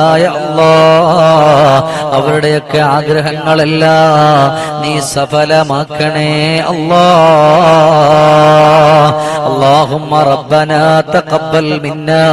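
A man chanting an Arabic supplication into a microphone in long, drawn-out melodic phrases, the held notes wavering up and down. The phrases break off briefly a few times and grow shorter and choppier near the end.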